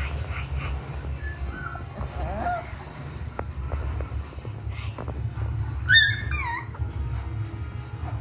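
Alaskan Klee Kai dogs playing and vocalising: a few small whines about two seconds in, then a loud yelp that falls in pitch about six seconds in.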